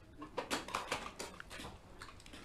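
Faint, scattered lip and tongue clicks and small mouth noises from a man pausing mid-speech, picked up close by a clip-on lapel microphone.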